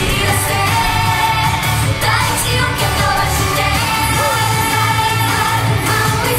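Live J-pop performance: a girl group sings into handheld microphones over a loud pop backing track with a steady beat.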